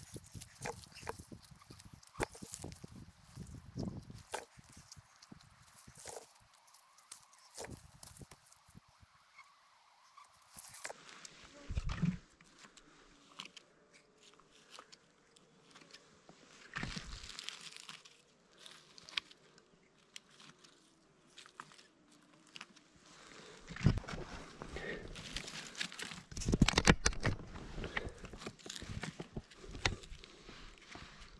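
Close handling noise on a dry, burnt forest floor: crackling of needles, twigs and charred debris with scattered small clicks as morel mushrooms are cut with pruning snips and picked. Louder bursts of rustling come about 12, 17, 24 and 27 seconds in.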